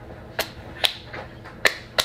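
A hand slapping bare thighs: four sharp smacks at irregular intervals.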